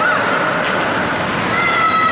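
High-pitched, drawn-out yells from people in the rink, a new one starting about one and a half seconds in, over the steady echoing noise of an indoor ice hockey arena.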